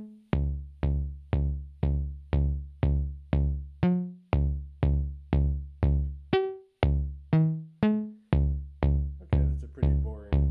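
Intellijel Shapeshifter wavetable oscillator (Chirp 17) playing a René-sequenced D-flat major pattern, played dry: a steady run of short plucked notes, about two a second, each with a sharp attack and a quick decay over a heavy bass, the pitch stepping up and down from note to note.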